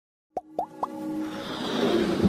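Intro sound effects: three quick pops, each a short upward blip, then a rising whoosh that swells into electronic music.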